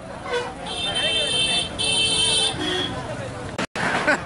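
Vehicle horn honking: two long steady blasts about a second in, then a shorter, lower toot, over the chatter of a street crowd. The audio drops out for an instant near the end.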